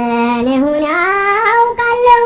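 Song on the soundtrack: a high voice singing a melody, holding a low note and then gliding up to a higher held note about a second in.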